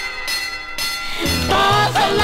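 1959 rock-and-roll pop record with orchestra, in a short break without the lead vocal: a held ringing bell-like tone over thin backing, then about a second in the bass and the rest of the band come back in.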